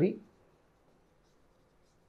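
A man's voice trails off at the very start, then faint scratches and taps of a stylus writing on the glass of an interactive display screen.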